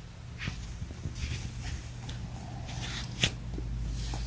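Fabric rustling and handling noises as a fleece blanket and the camera are moved around, with a sharp knock about three seconds in, over a steady low hum.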